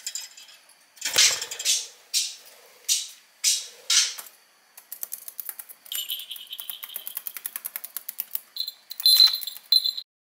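A budgerigar's cage toys rattling and clicking: a few separate rattles, then a fast run of sharp clicks. A small bell rings near the end.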